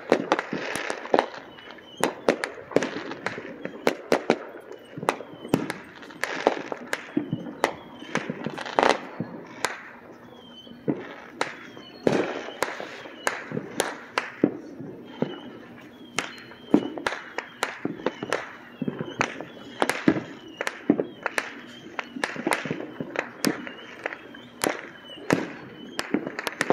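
Fireworks going off in a dense, irregular barrage of sharp bangs and pops, several every second.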